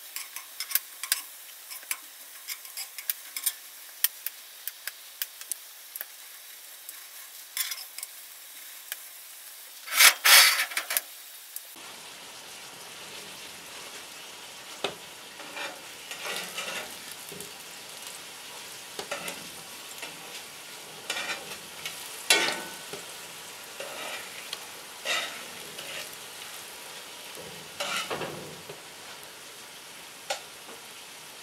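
Food sizzling as it fries in oil in a large cast iron skillet, with sharp clicks and scrapes of a metal utensil turning the pieces against the iron. A louder burst of sizzle and scraping comes about ten seconds in.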